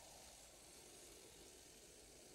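Near silence: a faint steady hiss.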